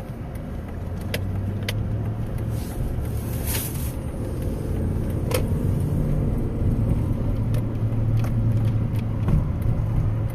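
Car engine and road noise heard from inside the cabin while driving: a steady low hum that grows louder as the car gathers speed, with a few light clicks and a brief hiss about three and a half seconds in.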